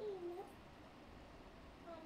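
A faint, short pitched vocal sound in the first half-second, dipping and then rising in pitch.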